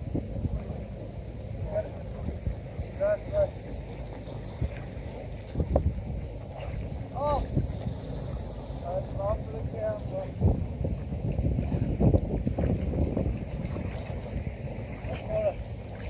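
Wind rumbling on the microphone over open water, with kayak paddles splashing now and then and short distant voices calling out.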